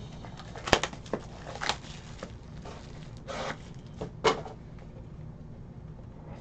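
Plastic shrink wrap being torn off a trading card box: a handful of short crinkles and crackles, the sharpest about a second in, with softer rustling near the middle.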